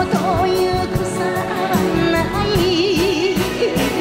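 A woman singing a Japanese enka ballad live with orchestral backing; in the second half she holds a long note with a wide, slow vibrato.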